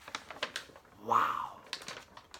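A few short, sharp clicks or taps, with a brief wordless vocal sound from a man about a second in.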